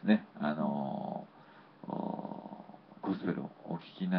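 A person's voice: brief speech-like sounds, then two drawn-out buzzy vocal sounds about a second long each, with a short gap between them.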